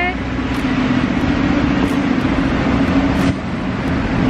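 Road traffic: a vehicle engine's steady drone over a wash of traffic noise.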